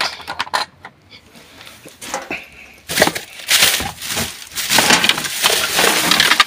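Rummaging through a bin of rubbish: plastic bin bags rustling and crinkling as items are shifted, with a few small knocks early on and continuous louder rustling from about halfway through.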